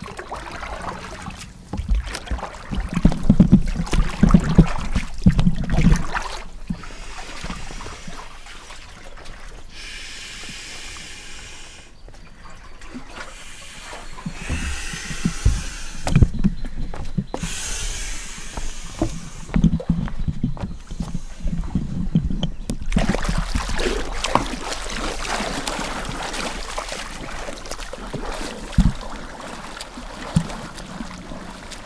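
Water splashing and sloshing in uneven spells as hands paddle an inflatable vinyl raft. Low bumps and rumbles on the microphone are loudest a few seconds in.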